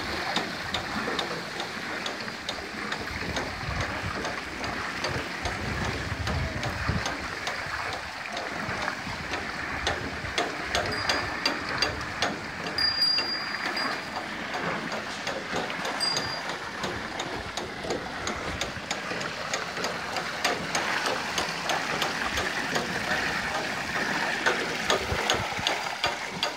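Bullock-driven Persian wheel turning over a well: a steady clatter of its iron gearing and chain of metal buckets, full of fine rapid clicks, with water splashing as the buckets tip out.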